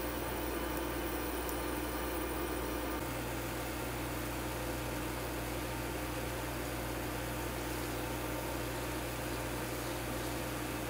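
Tofu pancake frying in a little olive oil in a non-stick pan on an induction cooker: a steady sizzle over the cooker's low, even electric hum.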